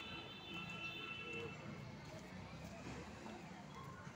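Faint background voices with a few steady high tones in the first second and a half.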